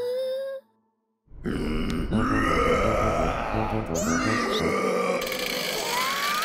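Cartoon characters' grunting, straining vocal noises over background music, after a short break in the sound about a second in.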